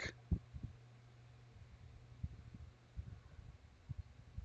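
Faint steady low hum, with a few soft taps scattered through it.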